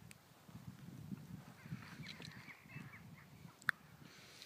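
Faint open-air ambience: a low, uneven rumble with a few thin, high bird calls in the middle, and a single sharp click near the end.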